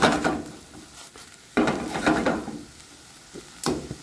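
Diced butternut squash and green beans sautéing in a little chicken stock in a nonstick frying pan, sizzling as they are stirred, with a burst of stirring noise about a second and a half in and a short click near the end.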